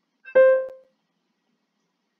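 Notation software playing back a single sampled piano note, the C above middle C, as it is entered as the soprano note. The note is short and fades within about half a second.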